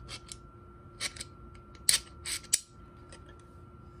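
Knipex Cobra water pump pliers clicking as the jaws are worked and the push-button joint is moved through its settings: a handful of sharp metal-on-metal clicks, then quiet handling for the last second or so.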